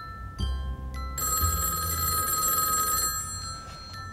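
Landline telephone bell ringing once for about two seconds, starting a little over a second in, over background music.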